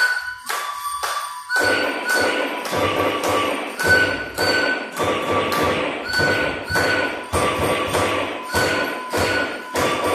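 Live electronic music: a steady pulse of thuds, roughly two to three a second, with short high pitched pings laid over them. The pulse settles in about a second and a half in, after a few looser hits over a held tone.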